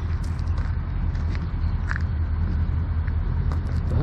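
Steady low rumble of a diesel locomotive engine running down the line, with faint footsteps ticking over it.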